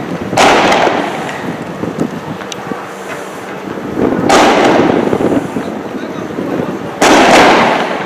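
Three loud explosive bangs during a street clash, each starting suddenly and echoing away over about a second, the first near the start, the second about four seconds later and the third three seconds after that.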